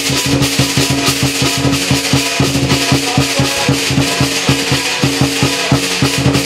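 Lion dance percussion: a large Chinese drum beaten in fast, even strokes, several a second, with cymbals clashing steadily over it.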